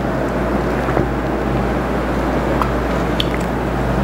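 A man taking a drink, with faint sips, swallows and small mouth clicks over a steady low hum and hiss.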